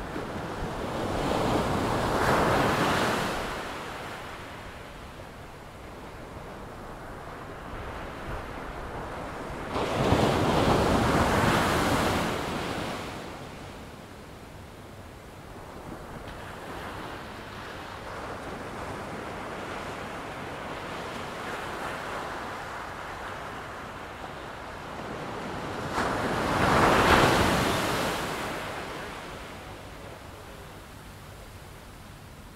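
Ocean surf breaking on a shore. Three waves swell up as a rushing noise and fade away, one near the start, one in the middle and one near the end, with a lower steady wash between them.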